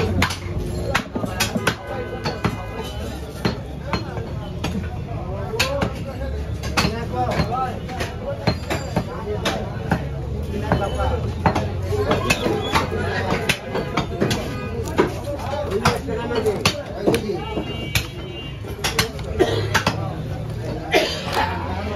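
A butcher's cleaver and knife striking a wooden stump chopping block while cutting up a cow leg, making repeated sharp knocks at an irregular pace.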